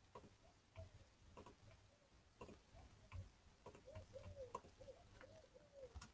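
Near silence over an open call microphone, with faint scattered clicks and a faint, repeated, low cooing call in the background.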